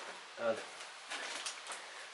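A man's single short spoken word about half a second in, otherwise only a low, even background hiss.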